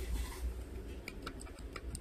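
Precision screwdriver working the tiny screws of a phone's plastic midframe: a brief soft scrape, then a run of light sharp ticks, about four or five a second, in the second half.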